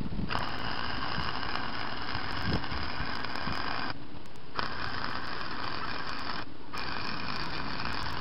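Wire-feed (MIG) welder arc crackling as weld beads are laid, in three runs: the first starts just after the beginning and stops a little before halfway, the second follows after a short gap, and the third starts after a brief pause about three-quarters of the way in and carries on to the end.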